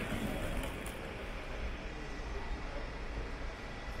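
Steady background traffic noise with a low rumble from cars moving and idling nearby.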